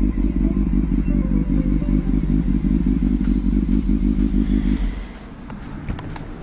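Honda motorcycle engine running at idle with a steady, fast pulsing rumble. Near the end it drops away to a faint hum.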